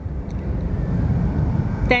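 Low, steady rumbling background noise with irregular flutter, in a pause between sentences.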